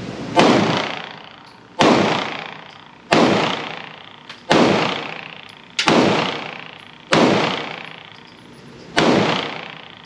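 Seven shots from a Smith & Wesson M&P Shield Plus pistol in .30 Super Carry, fired at a steady pace about a second and a half apart, each followed by a long echo off the indoor range.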